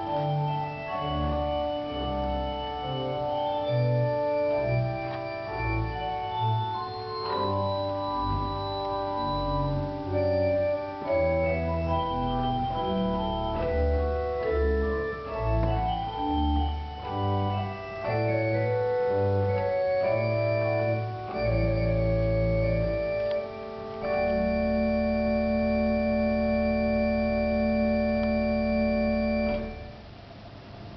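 Pipe organ playing a piece in full chords, with low bass notes moving beneath. It closes on a final chord held steady for about five seconds and released just before the end.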